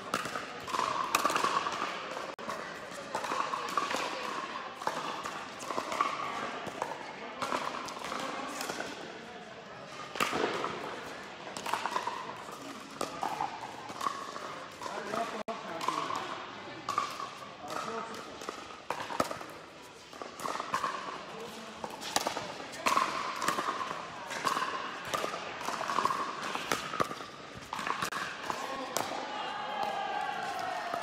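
Pickleball paddles striking a hard plastic ball, sharp pops at irregular intervals through rallies, ringing in a large indoor hall, over indistinct voices.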